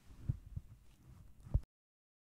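A few soft, low thumps, the last one the loudest, then the sound cuts off suddenly about one and a half seconds in.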